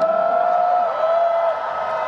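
Concert crowd of fans cheering, several high voices gliding up and holding together, then dying away about a second and a half in.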